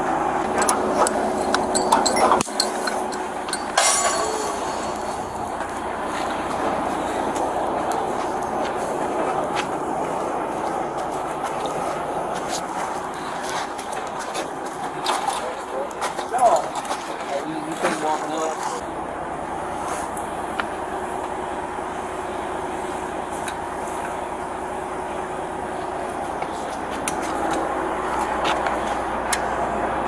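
Heavy trucks' diesel engines running steadily, with a few sharp metallic clicks and clinks from the rigging.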